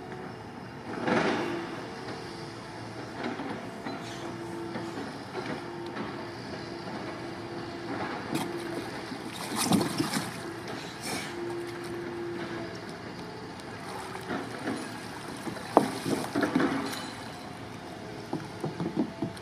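Water splashing and sloshing around a surfski as it is tipped over and a person slides out into shallow water. There are several splashes, the loudest about ten seconds in, and a cluster of sharper splashes near the end as he gets up beside the boat.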